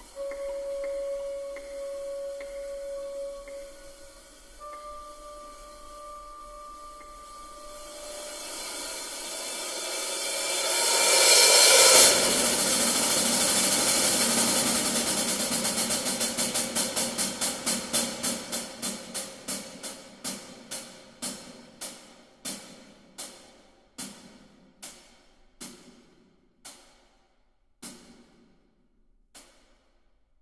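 Orchestral music: held notes give way to a swelling wash of sound that peaks about twelve seconds in. It breaks into rapid repeated percussive strokes that slow down steadily and thin out, the last few falling under a second apart near the end.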